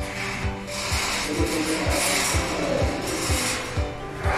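Background music with a steady beat of about two thumps a second, over rubbing and scraping from a steel mesh bed frame being carried down a stairwell.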